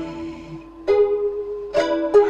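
Instrumental music between sung lines: a plucked string instrument lets a held note ring, then plucks fresh notes about a second in and again near the end.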